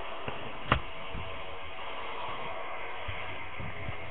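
Trading cards in plastic holders being handled, with one sharp click a little under a second in and a few faint low knocks, over a steady hiss.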